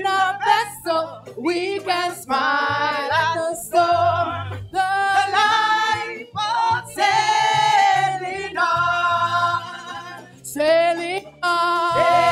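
A women's gospel praise team singing through microphones, several voices in harmony, in short phrases with brief breaks between them.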